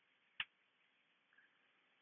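Near silence with a single computer mouse click about half a second in.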